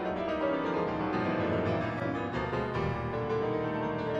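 Solo piano playing classical music, many notes sounding together.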